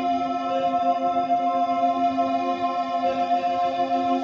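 Ambient music from a looped K.1 organ: a steady held chord of several sustained tones.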